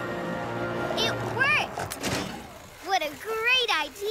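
Cartoon soundtrack: light background music fading out, with short wordless exclamations from cartoon voices and a single short knock about two seconds in.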